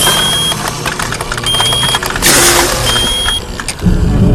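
An electronic beep sounding three times, each beep about half a second long and roughly a second and a half apart, over loud rushing noise and a low steady hum.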